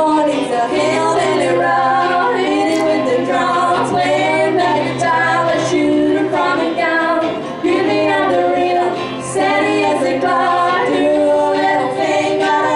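Female voice singing a country-rock song with acoustic guitar accompaniment, in a live stage performance.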